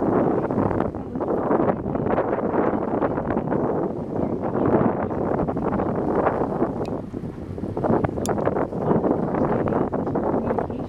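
Wind buffeting the microphone aboard a boat at sea: a continuous, uneven rushing noise. There are a couple of faint clicks late on.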